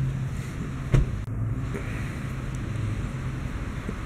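A steady low mechanical hum over outdoor traffic and wind noise, with one sharp click about a second in.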